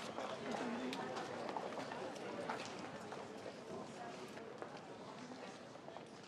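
An audience filing out of a hall: many footsteps on a hard floor and a low murmur of voices.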